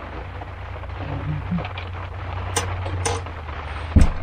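Rain pattering on the roof of a cargo-trailer camper, heard from inside over a steady low hum, with scattered sharp taps in the second half and one heavy thump right at the end.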